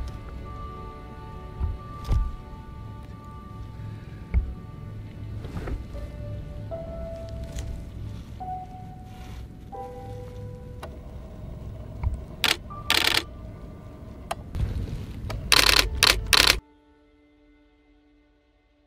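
Background music of slow held notes over a low rumble, with a Nikon DSLR's shutter firing in rapid bursts a little after the middle and again near the end. The rumble and clicks cut off suddenly near the end, leaving only faint music.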